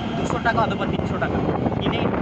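Hitachi hydraulic excavator's diesel engine running with a steady low drone while digging canal soil, with brief speech over it.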